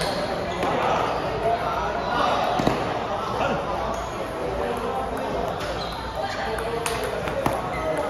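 Celluloid-type table tennis ball clicking off bats and the table in a rally, a few sharp clicks at irregular spacing. Steady chatter of voices fills the hall.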